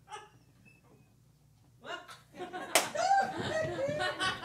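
A near-silent pause, then voices and laughter rise about two seconds in, with one sharp slap just before the three-second mark.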